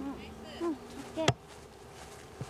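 A low steady buzz from a flying insect, with a few short murmured voice sounds. The buzz stops with a sharp click a little past halfway through.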